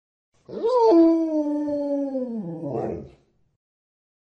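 A single long canine howl that rises at the start, holds steady, then falls away and stops about three seconds in.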